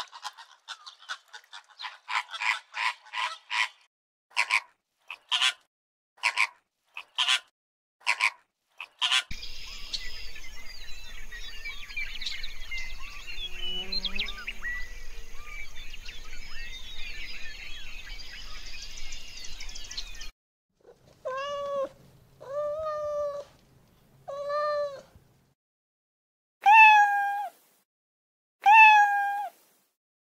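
A run of short, harsh honking calls from flamingos. Then about ten seconds of mixed waterbird chatter, many small chirps over a steady hiss. Near the end a domestic cat meows five times, the last two meows the loudest.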